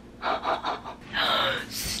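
A woman gasping in excitement: three or four quick breathy gasps, then a longer, louder breathy gasp ending in a sharp hiss of breath.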